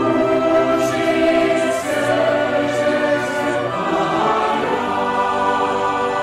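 Mixed choir of men's and women's voices singing a Latvian song in harmony, with long held chords that change about every two seconds.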